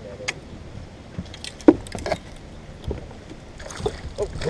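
A few short, sharp knocks and clatters of fishing gear on the deck of a bass boat, the loudest about halfway through. Near the end a splash as a hooked bass jumps beside the boat.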